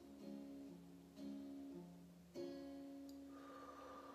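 Quiet background music played on acoustic guitar, with plucked notes ringing on and a new chord struck about every second.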